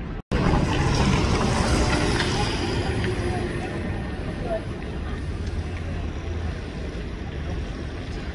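Outdoor street background with a steady low rumble and hiss. It cuts out briefly near the start, then is loudest for the next couple of seconds, with indistinct voices in it.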